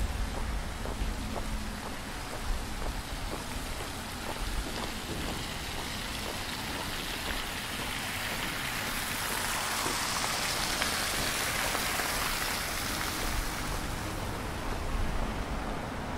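Water spilling over the rim of a round stone fountain and splashing into its drain ring, a steady splashing that swells to its loudest near the middle and fades again over the last few seconds.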